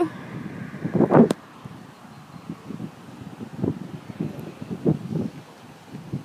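Wind buffeting the microphone in irregular gusts, with a louder bump about a second in.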